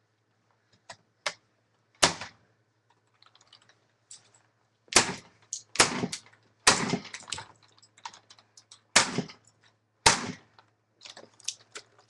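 A white plastic Apple computer keyboard being smashed: about six hard blows, each followed by a short clatter, with lighter knocks between them.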